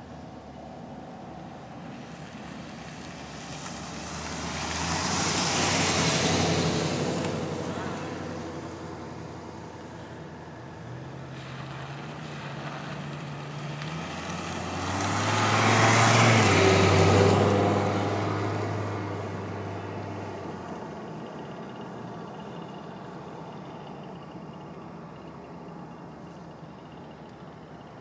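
Two road vehicles pass one after the other. Each rises and fades with a low engine hum and tyre noise over several seconds. The second, about sixteen seconds in, is louder.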